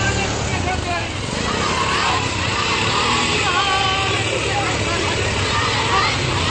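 Many voices of a large walking procession crowd, with the engine of a CNG auto-rickshaw running steadily underneath.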